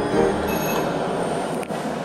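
A shop's wooden door being pushed open: a steady noisy scrape with a sharp click about one and a half seconds in.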